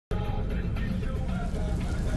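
A car running at motorway speed: steady low road and engine rumble inside the cabin, with music faintly underneath.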